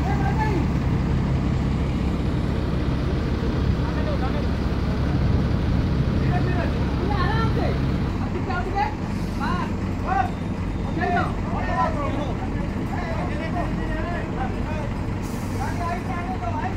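Heavy diesel engine of the lifting crane running steadily under load during a hoist, its deep hum easing about halfway through. Men's voices call out over it in the second half.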